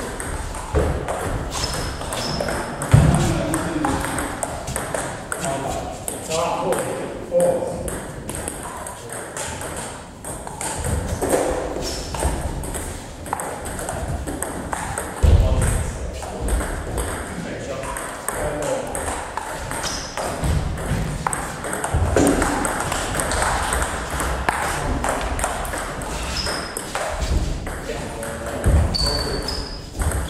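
Table tennis ball clicking back and forth off the bats and table in quick rallies, with a few louder low thumps along the way.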